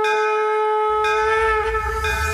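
Conch shell (shankh) blown in one long, steady note. About a second in, a low rumble joins underneath, and near the end the note wavers and sags slightly in pitch.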